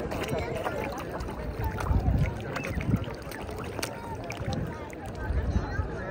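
Indistinct voices of people chattering, with low rumbles of wind or handling on the microphone that swell a few times.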